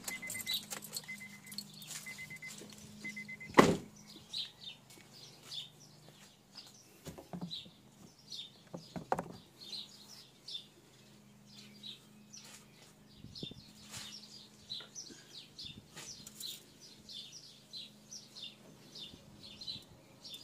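A Honda car's warning chime beeping four times as the engine is switched off, then a single loud thump of the car door shutting. Small birds chirp throughout, and there are a few lighter knocks.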